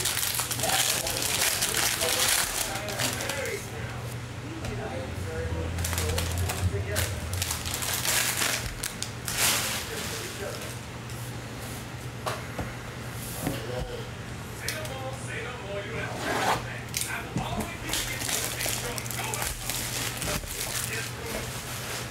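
Foil wrapper of a trading-card tri-pack crinkling and tearing as it is opened and handled, in several short bursts, with occasional clicks of cards and packs being handled. A steady low hum runs underneath.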